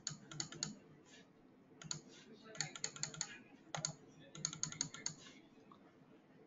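Faint typing on a computer keyboard, short runs of rapid keystrokes with pauses between them.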